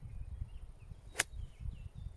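A 9 iron striking a golf ball off the grass: one sharp click about a second in.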